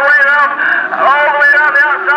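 A man's race commentary, loud and continuous, heard through a public-address loudspeaker, with race cars running on the track faintly beneath it.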